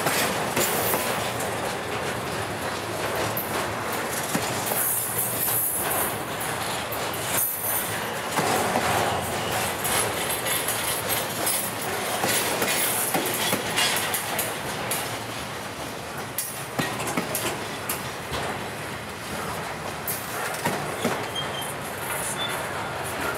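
Intermodal flatcars loaded with highway trailers rolling past: a steady rumble of steel wheels on rail with clicking over the rail joints, and brief high wheel squeals about five and seven seconds in.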